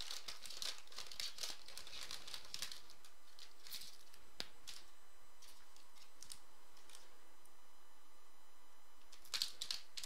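Foil trading-card pack wrapper crinkling as it is handled, busy over the first three seconds, then a few light clicks of cards being handled, with more crinkling near the end.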